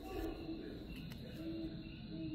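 Animal calls: short, low, steady notes repeating a few times, with fainter higher chirps between them, over a steady low hum.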